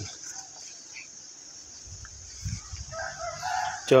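A rooster crowing in the background, one call of about a second near the end, over a steady high hiss.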